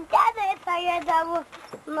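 A young child's high voice calling out in long, drawn-out syllables, twice.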